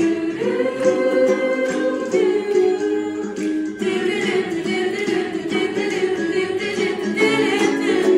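A mixed choir of teenage voices singing a show tune in close harmony, holding chords that change every couple of seconds, with a strummed ukulele underneath.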